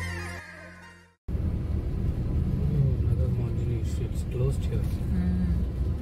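Background music with a falling tone that cuts off about a second in, followed by the steady low rumble of a car driving on the road.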